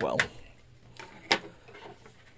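The end of a spoken word, then a single sharp click a little over a second in.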